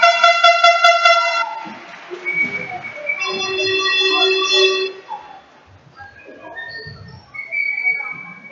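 Two long, steady horn-like tones, each about a second and a half: a higher one at the start and a lower one about three seconds in. Faint low murmur and rustling follow.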